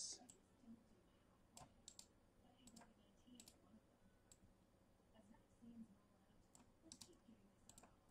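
Faint, irregular clicks of a computer mouse and keyboard, a dozen or so scattered over the stretch, in otherwise near silence.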